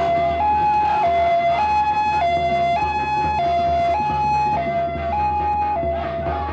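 Ambulance siren sounding a two-tone hi-lo wail, alternating evenly between a higher and a lower note about every 0.6 seconds.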